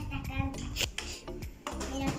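Plastic pieces of a toy castle playset clicking and clattering as they are handled, a series of short sharp knocks, with faint music underneath.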